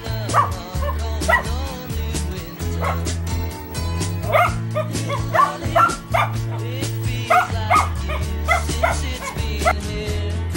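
Soft Coated Wheaten Terrier puppy yipping and barking in short, high yaps, a few at a time: near the start, again from about four to six seconds in, and again from about seven seconds to the end. Background music with a steady bass plays underneath.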